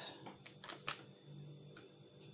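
A few faint crinkles and clicks of a plastic food pack being handled and turned over in the hands.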